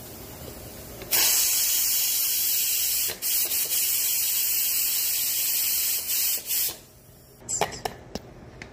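Pressure cooker venting steam through its lid valve: a loud, steady hiss that starts abruptly about a second in, breaks off briefly twice and stops before the end, as the pressure is let off. A few sharp clicks follow near the end.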